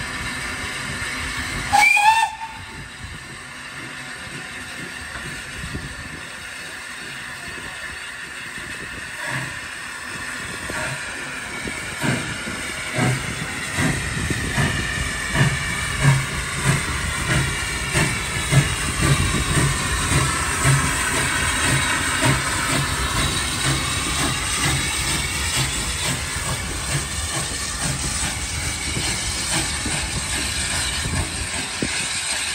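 A South Eastern and Chatham Railway O1 class 0-6-0 steam locomotive gives a short whistle about two seconds in. Its steam then hisses, and its exhaust beats start slowly and quicken as it pulls its train away from the platform. The coaches roll past near the end.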